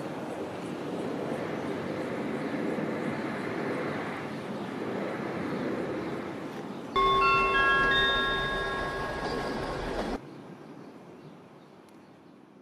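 A steady noisy rumble, then about seven seconds in a chime: several clear ringing notes at different pitches struck in quick succession, which cuts off abruptly about three seconds later and leaves a fading tail.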